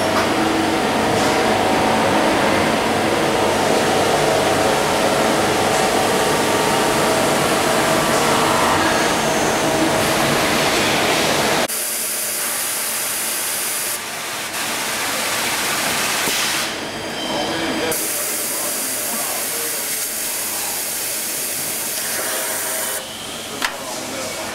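Steady mechanical noise from an IEMCA bar unloader handling steel bars, with a hiss and background voices. The sound changes abruptly about halfway through, becoming thinner and hissier, and shifts suddenly again a few times near the end.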